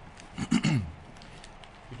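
A man coughs once, about half a second in: a short cough with a voiced tail that falls in pitch.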